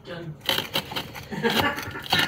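Knife and fork sawing through a hard toasted sandwich on a ceramic plate: scraping and small clicks of the cutlery against the crust and plate, under a soft laugh.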